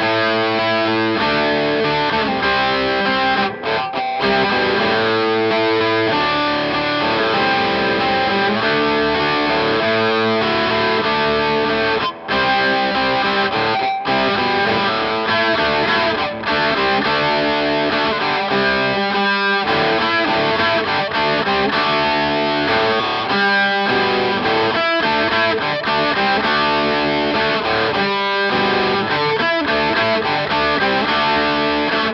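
Tom Anderson Bobcat Special electric guitar with humbucker-sized P-90 pickups, played through a transparent overdrive into a Tweed amp: a rock-and-roll part of dyads and triads in a distorted tone, with a few very short breaks between phrases.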